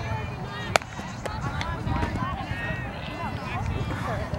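A pitched softball smacking once into the catcher's mitt, sharp and short, about a second in, over players' voices calling out across the field.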